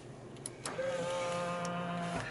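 Honda CR-V's electric folding door mirror motor: two faint clicks, then a steady whine for about a second and a half as the mirror folds.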